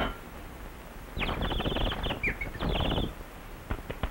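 Cartoon sound effect of high, birdlike chirping, two runs of rapid repeated chirps and trills, the classic cue for a dazed character seeing stars after a blow. A few sharp clicks come near the end.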